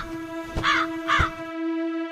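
Crow cawing twice, about half a second apart, in the first half, over a steady held music note.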